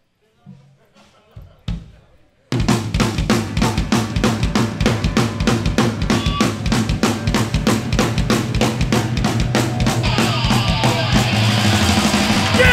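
Live hardcore punk band kicking into a song: after a few stray notes and knocks, drums, distorted guitars and bass come in together and hard about two and a half seconds in, with a fast, driving drum beat. The cymbals and guitar get brighter near the end.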